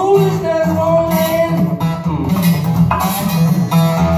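Steel-string acoustic guitar strummed in a steady rhythm, with a man's voice holding long sung notes over it.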